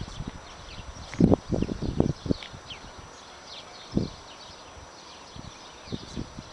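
Footsteps on a concrete railway platform: a run of scuffing steps about a second in and one more step near the middle, over faint high chirping in the background.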